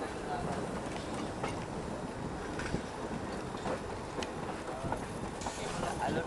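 Old tram rolling slowly over depot track, a steady rumble of steel wheels on rail with a few irregular clanks as the wheels cross rail joints and switches.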